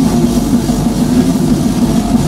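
Metal band playing live at full volume: heavily distorted electric guitars over a drum kit, loud and dense.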